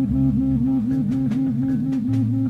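Live rock recording: distorted electric guitar holding a note that wavers up and down about five times a second, over a steady bass line and light drums.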